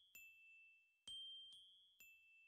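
Very quiet high chime notes, a lower and a higher note alternating, each struck and ringing out: about three strikes, part of a slow repeating pattern of music.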